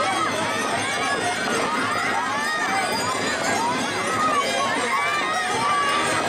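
Crowd of children shouting and calling out together, many high voices overlapping in a steady din.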